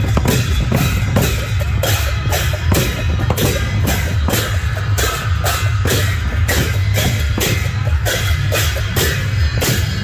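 A double-headed barrel drum and pairs of brass hand cymbals play a steady, fast processional beat of two to three strokes a second. The cymbals clash together on the drum strokes.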